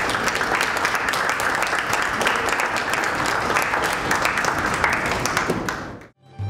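A small audience applauding steadily. The applause fades out near the end.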